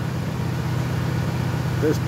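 Borehole drilling rig's engine running steadily, a low even drone with no change in speed.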